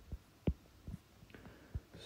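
About five faint, soft taps of a stylus on a tablet screen, irregularly spaced, the clearest about half a second in.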